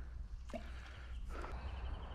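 Quiet outdoor ambience: a steady low rumble with a faint click about half a second in and a faint thin high call near the end.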